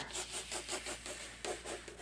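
Pencil scratching across watercolor paper in quick short strokes, about five a second, as a landmass is sketched in.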